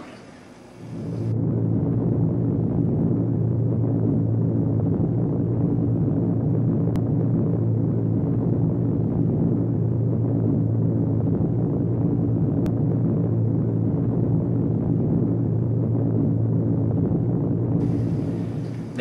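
Steady, deep drone of a four-engine piston bomber's engines, a B-24 Liberator, on an old, muffled film soundtrack, starting about a second in. Two faint clicks come partway through.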